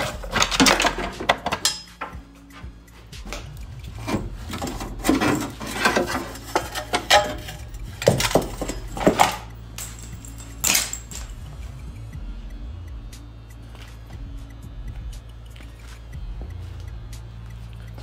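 Metal clinks and rattles of old parking-brake cables being pulled out and handled, frequent for the first ten seconds or so and then sparse, over music.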